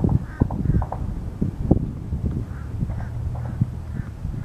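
Low, uneven rumble and small thumps of wind and handling on a handheld camera's microphone, with faint bird calls repeating in the background.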